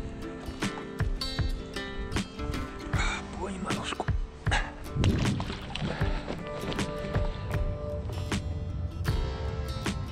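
Background music with steady held notes and frequent sharp beats.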